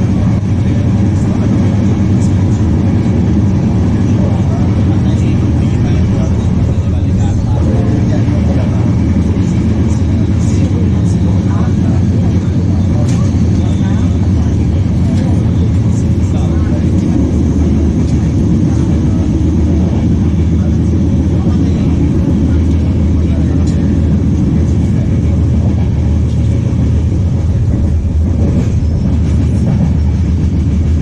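Inside a UIC-Z Intercity passenger coach running at speed: a steady, loud low rumble of wheels and bogies on the track, with rail noise coming through the body of the carriage.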